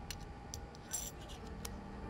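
Small metallic clicks and clinks as metal button parts are handled and set into the dies of a hand-operated button-making press, with a brighter ringing clink about a second in.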